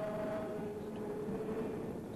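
Voices singing a slow hymn in unison, with long held notes that change pitch only every second or so, over a steady background hiss.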